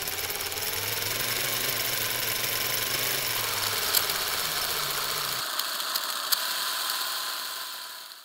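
Film projector running: a steady mechanical whirr and clatter with hiss, and a low hum that drops out about two-thirds of the way through. A couple of sharp clicks stand out, and the sound fades away at the end.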